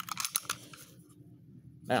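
Light metallic clicks from a stainless .45 pistol being unloaded and shown clear, a quick run of them in the first half second, then quiet.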